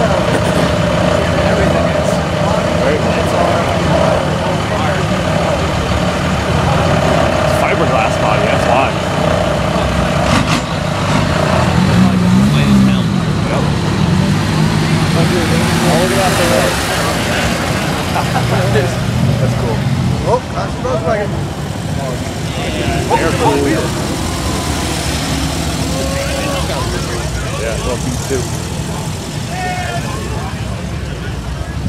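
Engine of a lowered Nissan 240SX drift car running at low speed as the car rolls away, a steady low engine note whose pitch pattern shifts about twelve seconds in. People are talking around it.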